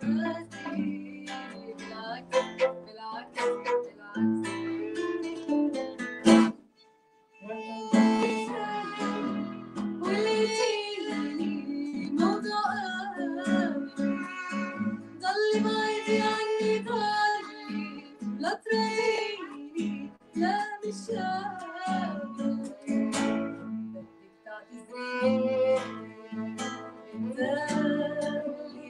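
Live acoustic music: a violin and a strummed acoustic guitar accompany a woman singing. The music stops briefly about seven seconds in, then picks up again.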